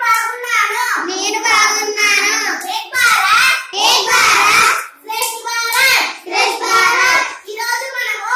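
Children's voices reciting short phrases aloud in a sing-song, chant-like way, with only brief breaks, the longest about five seconds in.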